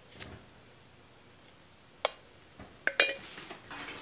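A handful of light, sharp clinks and knocks, scattered through a quiet stretch: a stainless steel pitcher and a spatula touching the ceramic slow-cooker crock as lye solution is poured into melted oils.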